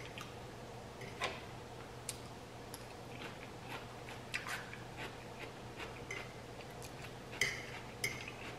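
Quiet eating sounds: a metal fork picking at food on a platter with scattered light clicks, and chewing of taco fillings and broken pieces of taco shell, over a faint steady low hum.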